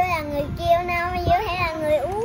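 A young child singing in a sing-song voice without clear words: one short held note, then a longer wavering phrase from about half a second in.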